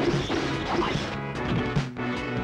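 Dubbed film-fight punch sound effect: a sharp whack right at the start, laid over dramatic background score that runs on throughout.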